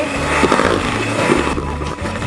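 Electric hand mixer running, its beaters working flour and baking powder into thick cake batter in a metal bowl.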